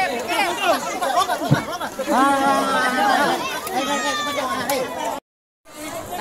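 Several people talking and calling out over one another, with one voice drawn out in a long call about two seconds in. The sound cuts out completely for a moment near the end.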